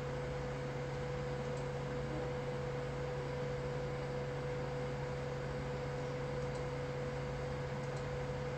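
Room tone: a steady low hum with a faint even hiss underneath.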